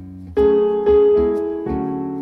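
Piano chords from a song's intro, played back through an Acoustic Energy Aegis Evo Three floor-standing loudspeaker. Three new chords are struck in the two seconds, each ringing on into the next.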